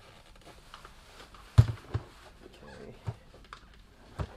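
Plastic tail light housing knocking on the workbench as it is handled and pressed down: one sharp knock about a second and a half in, a lighter one just after, and two softer taps near the end, with faint handling rustle between.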